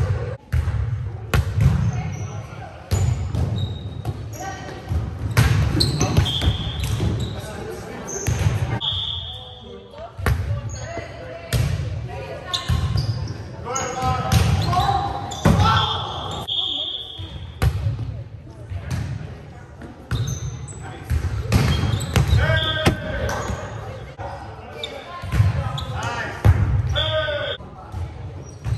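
Indoor volleyball play in a large gym: repeated sharp smacks of the ball being hit and striking the hardwood floor, with short high squeaks of shoes on the court and players calling out now and then.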